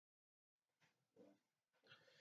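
Near silence: dead quiet at first, then only a faint hiss with two very faint, brief sounds, one about a second in and one near the end.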